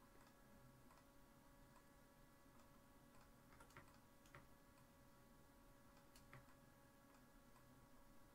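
Near silence: faint steady room hum with scattered faint clicks at irregular times, from computer mouse and keyboard use while posing a character rig in Maya.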